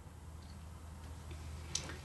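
Quiet pause with a steady low hum and faint handling of the crocheted fabric and yarn, and a small click near the end.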